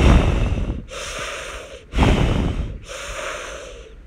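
A person breathing deeply in and out, about one breath a second, alternating louder and softer breaths close to the microphone.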